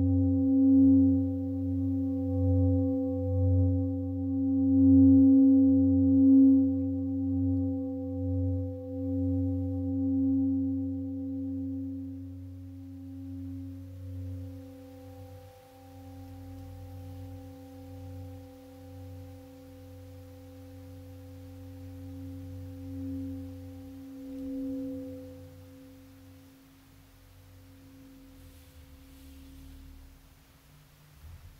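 Deep singing bowl ringing out, its tone wobbling with a slow, regular pulse of about one beat a second. It fades gradually through the second half.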